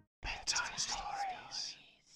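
A person whispering a short phrase. It starts after a brief silence a fraction of a second in and lasts about a second and a half.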